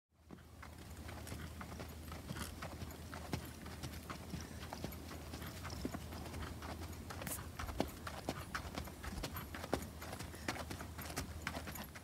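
Hoofbeats of a saddled horse walking on a dirt road, an uneven patter of footfalls over a steady low hum.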